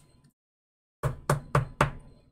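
Four short, sharp taps about a quarter of a second apart, starting about a second in after a gap of silence.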